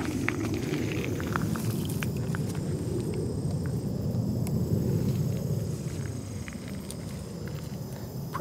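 Slow, careful footsteps with light crackles from dry fallen reed stalks underfoot, over a low steady rumble that eases off about six seconds in.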